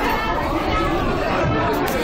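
Indistinct chatter of several people talking at once, steady throughout, with no single voice standing out.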